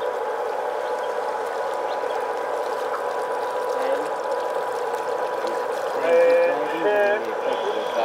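Steady hum with a thin high whine from the boat's motor as it moves slowly along the canal. A person's voice sounds briefly about six seconds in.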